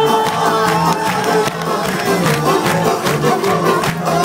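Live rock band playing, electric guitars and drums with a steady beat, heard at loud volume from within the audience.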